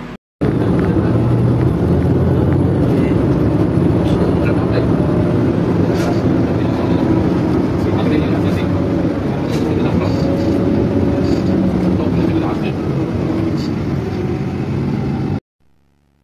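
Loud, steady cabin noise of a moving city bus, engine and road rumble, heard from inside the bus. It cuts in abruptly about half a second in and stops abruptly near the end.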